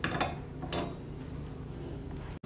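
Small gold bar set down on a wooden bench pin: a light clack just after the start and a second, softer clack under a second in as it settles.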